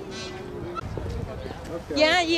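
Indian peafowl (peacock) calling: a short cry shortly after the start, then a loud, wavering honking call near the end, over background voices.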